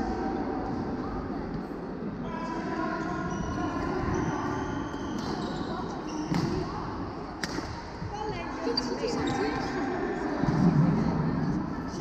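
Voices talking in a large, echoing sports hall, with two sharp hits of a badminton racket on a shuttlecock about a second apart near the middle.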